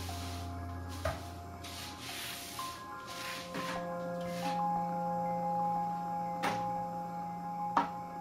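Film soundtrack: sparse music of long held, ringing notes, with sharp knocks about a second in, past six seconds and near the end, and soft swishing noise in the first few seconds.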